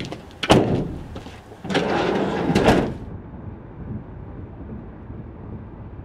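Rear doors of a van being shut: one door slams about half a second in, and the second swings closed with a rattle and slams just under three seconds in. After that comes a low, muffled, steady sound of a vehicle driving.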